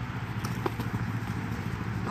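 Steady low rumble of open-air field ambience, with two or three faint short ticks about half a second in.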